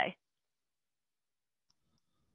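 Near silence on a video call after a voice trails off, with one faint click near the end.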